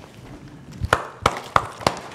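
A quiet room, then from about a second in a short run of sharp, uneven knocks, like footsteps on a hard floor.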